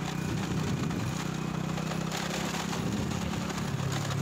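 Motorcycle engine running at a steady pitch while riding, its hum sinking slightly near the end, with scattered rattles and knocks.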